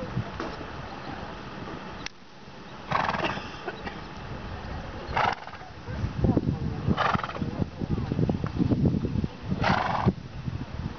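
Grey pony cantering on a show-jumping arena surface, with hoofbeats and four short loud snorts spaced about two seconds apart.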